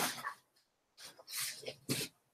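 Books and cardboard being handled inside a packing box: rustling and sliding in a few short bursts, with a sharper one near the end.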